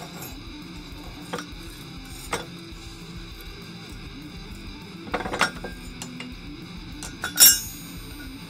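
Metal clinks as tongs, a hot steel knife blade and an aluminum plate are handled: a few light knocks, a short cluster of clatter about five seconds in, and a louder ringing clink near the end. Background music runs underneath.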